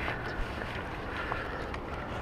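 Wind rumbling on the camera microphone over a steady outdoor hiss.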